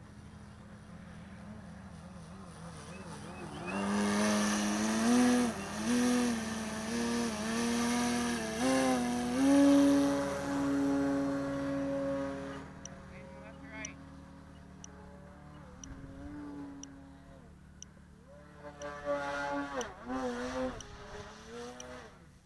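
Skywing 55-inch Edge model aerobatic plane's motor and propeller in flight, its pitch stepping up and down with sharp throttle changes during tumbling manoeuvres. It is loudest from about four to twelve seconds in, then fades, with a few more short throttle bursts near the end.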